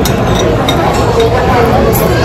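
Restaurant hubbub: many people talking at once, with a few small clinks of cutlery and dishes.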